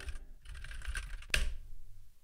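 Typing on a computer keyboard: a quick run of key presses, with one louder keystroke a little over a second in, then quiet.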